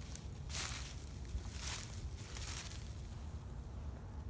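Rustling in dry leaf litter, in two short bursts about half a second and just under two seconds in, over a steady low rumble.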